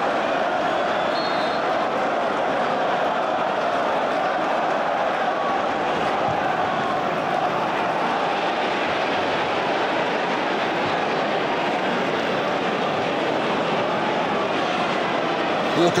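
Steady noise of a large football stadium crowd, an even wash of many voices with no single sound standing out.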